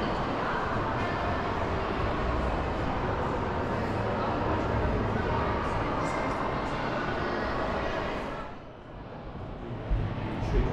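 Indistinct chatter of people in a large indoor hall, a steady background of voices with no words picked out, dropping away briefly near the end.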